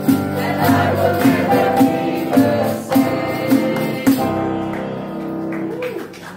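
A church chorus singing a gospel chorus with instrumental accompaniment over a steady beat. The beat stops about four seconds in, leaving a held final chord as the song ends.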